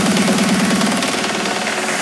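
Uplifting trance in a breakdown without the kick drum: a fast repeating synth pulse over sustained pads, easing slightly toward the end just before the beat comes back in.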